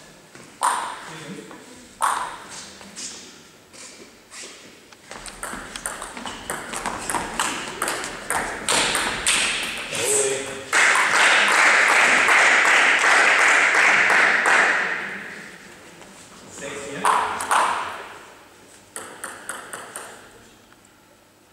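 Table tennis ball clicking off bats and the table in quick succession during a rally. The rally is followed by about four seconds of loud, even noise, the loudest part. A few more scattered clicks come near the end.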